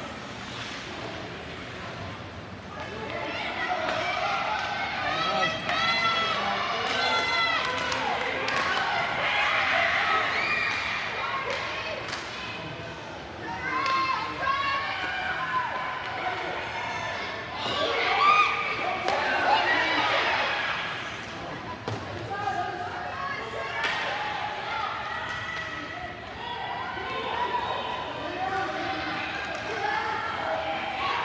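Ice hockey game in an arena: a steady mix of high-pitched voices of players and spectators shouting and calling out. Scattered sharp knocks and slaps come from sticks, the puck and the boards.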